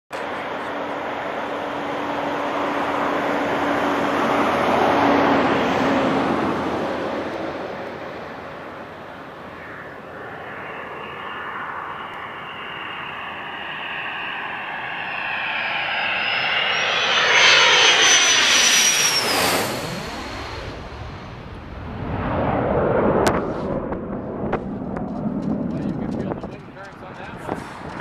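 F-16 fighter jet flying low overhead on approach, its engine noise building with a high whistle. The whistle is loudest a little past the middle, then the pitch sweeps sharply down as the jet passes overhead and goes away.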